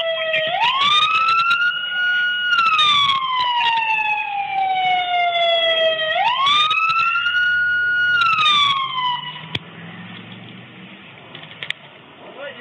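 Emergency vehicle siren wailing through two slow cycles, each rising quickly, holding high, then falling slowly, before it cuts off a little after nine seconds in. A low steady hum and a single click remain afterwards.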